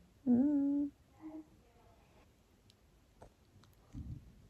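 A woman humming a short closed-mouth "mm" for about half a second, then a fainter, briefer hum.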